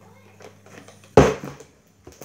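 A part-filled plastic drink bottle flipped and hitting the wooden table once with a sharp thud about a second in, after a few light handling clicks.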